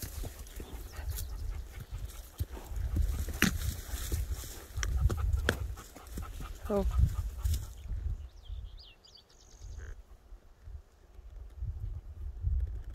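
Wind buffeting the phone's microphone as a low rumble during a horseback ride, with scattered knocks and rustles. It turns quieter after about eight seconds, with a few faint high chirps.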